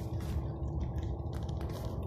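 Car cabin noise while driving slowly: a steady low rumble with a faint steady hum, and scattered light clicks.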